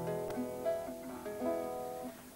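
Classical guitar and mandolin playing the instrumental opening of a Neapolitan song: a slow line of held, overlapping plucked notes, just before the singing comes in.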